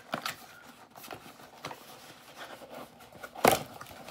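An Amazon package being opened and handled: scattered crinkling, clicks and rustles, with one loud sharp noise about three and a half seconds in.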